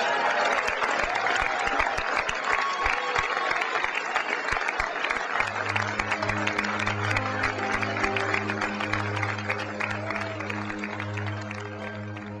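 An audience applauding after a speech, a dense crackle of clapping. About halfway through, music comes in under it with low sustained notes, and the applause slowly fades toward the end.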